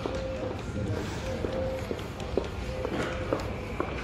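Irregular footsteps on a paved walkway, heard over faint background music and voices.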